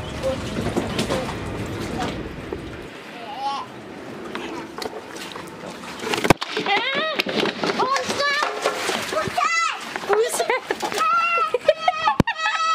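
Water splashing and sloshing, then a child's high voice calling out and squealing through the second half.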